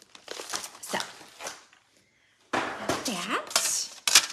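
Clear plastic zip-top bag crinkling and rustling as it is handled, in a run of short strokes over the first second and a half. After a brief pause, a louder burst of handling noise follows about halfway through.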